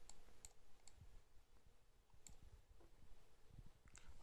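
Near silence with a handful of faint, scattered computer-mouse clicks.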